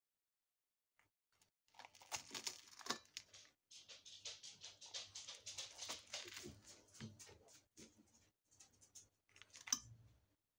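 A fork cutting into a breaded baked camembert on toast, with a run of faint crackly crunching and scraping against the plate beginning about two seconds in. There is a sharper click near the end.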